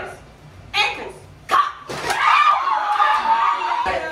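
Partygoers shouting: two short, sharp shouts in the first two seconds, then one long, drawn-out yell from about halfway.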